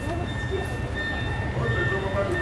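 Street background noise: a steady low rumble of traffic with a constant high-pitched whine over it, and faint voices in the distance.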